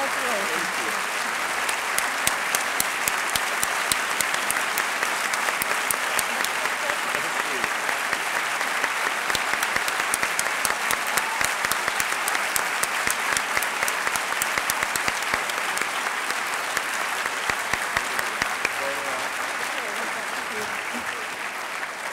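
Audience applauding: a dense, steady patter of many hands clapping, which thins out over the last couple of seconds.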